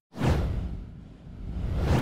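Whoosh transition sound effect: a rushing noise that fades away in the middle, swells again and then cuts off suddenly.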